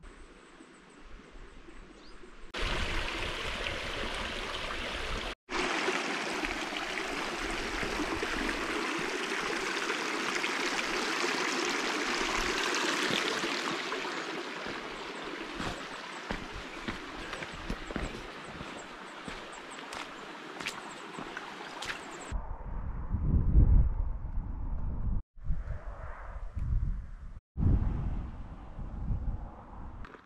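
A shallow stream rushing over stones, a steady rush broken once by a cut. About three-quarters of the way through it gives way to loud, irregular low gusts of wind buffeting the microphone.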